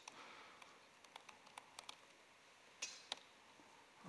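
Faint laptop keyboard typing: a handful of soft keystroke clicks, unevenly spaced, over quiet room tone.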